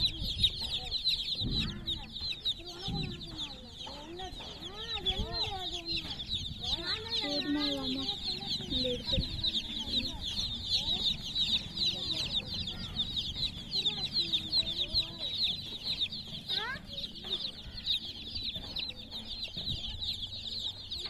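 A crowd of baby chicks peeping nonstop, a dense chorus of short, high chirps.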